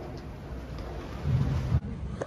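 Low rumble of wind on the microphone of a handheld phone camera, swelling in a gust shortly before it cuts off abruptly.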